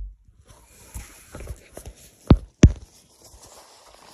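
Handling noise: a few light taps and rustles, then two sharp knocks about a third of a second apart just past halfway, as a phone and a glass light globe are moved about in gloved hands.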